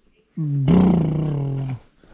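A single low, drawn-out call starts about a third of a second in and holds one pitch for about a second and a half. It turns rough and loud partway through, then stops shortly before the end.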